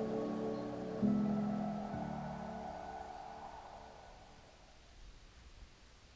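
Background music ending: held chords that change twice early on, then fade away to near silence.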